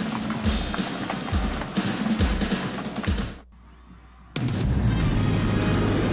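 Stadium crowd noise over music with a heavy, pounding beat, cutting off sharply about three and a half seconds in. After a brief dip, the broadcast sponsor bumper's music starts with a steady low bass drone.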